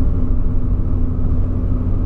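Cabin noise inside a moving Volkswagen Polo Sedan with the windows closed: a steady low rumble of engine and tyres rolling on the road.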